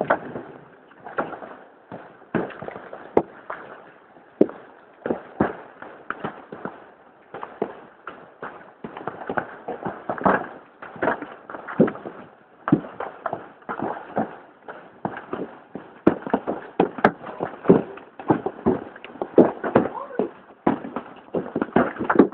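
Heavy hail: hailstones striking hard surfaces in irregular sharp cracks and knocks, several a second, with no let-up.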